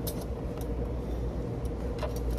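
Steady low background rumble with a faint steady hum, and a few light clicks from hands handling a small object.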